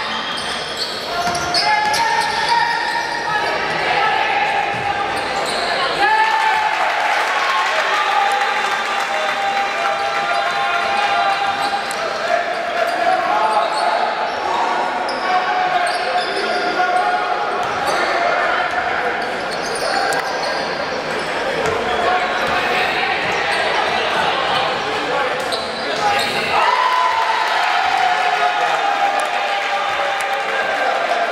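A basketball being dribbled on a hardwood court in a large, echoing gym, under a continuous din of several voices calling out at once.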